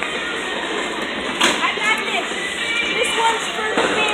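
Bowling alley din: background music and indistinct voices, with two sharp knocks, about a second and a half in and near the end.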